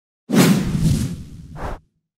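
Whoosh sound effect for a motion-graphics title transition: a sudden rush with a low boom, starting about a quarter second in and fading over about a second and a half, with a short higher swish near the end.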